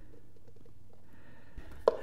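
Low steady room hum while thick casting resin is poured from a plastic cup, the pour itself making next to no sound. Near the end come two sharp knocks, the second the louder, as the cup is set down on the workbench.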